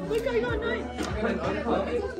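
Chatter of several voices at once with music playing underneath.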